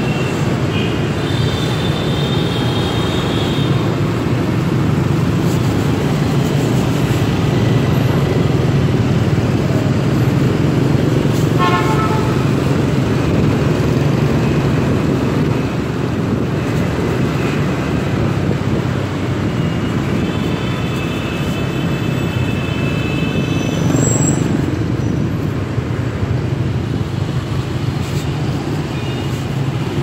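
Loud, steady motorbike and scooter traffic noise heard from a moving motorbike, with a low engine and road hum. Horns toot several times: briefly near the start, and longer about two-thirds of the way through.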